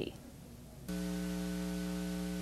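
Steady electrical mains hum with hiss, a low buzz that cuts in abruptly about a second in and holds level. It is carried on the race feed's audio track.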